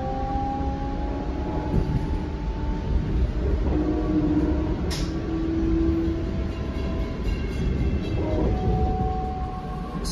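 Metra Electric double-deck electric train car running along the track, heard from inside: a steady low rumble of the wheels on the rails, with faint whining tones that come and go. There is a single sharp click about five seconds in.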